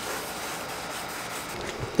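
Wet sandpaper on a foam sanding block rubbing lightly over a car's painted body panel, a soft, steady rubbing hiss as the orange peel is sanded down.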